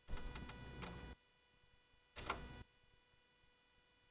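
A quick run of clicks with a short clatter, then another brief clatter about two seconds later: computer keyboard and mouse in use.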